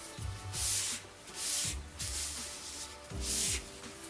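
Hands rubbing paper templates flat onto a basswood sheet: three short swishes of paper on wood, over quiet background music.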